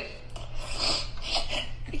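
A person's breathy sounds, short breaths or sniffs, over a steady low hum.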